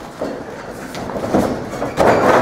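A few dull thumps and scuffs on a wrestling ring's mat as one wrestler grabs and lifts the other into a slam, with a loud impact right at the end.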